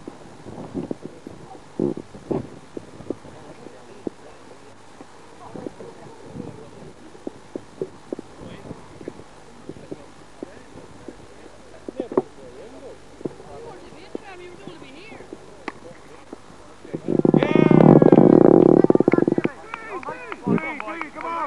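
Faint voices across the field with scattered small clicks and knocks, then a loud, close shout lasting about two seconds near the end.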